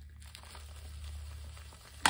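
Faint handling and crinkling of a crumpled plastic bag over a steady low hum, with a sharp knock at the very end.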